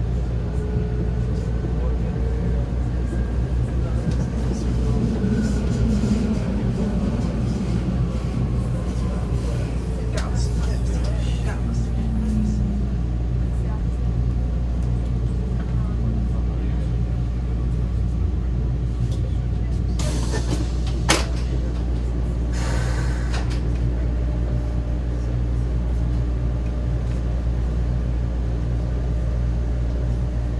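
Vienna U-Bahn train heard from inside the carriage: a steady low hum with faint falling whines as it slows into a station, then standing at the platform. About twenty seconds in come a short hiss with a sharp click, then a second hiss.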